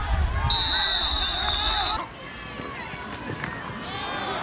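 Football stadium crowd voices, with a referee's whistle blowing one steady high note from about half a second in for about a second and a half, signalling the play dead after the tackle. The sound drops abruptly at about two seconds to quieter crowd voices.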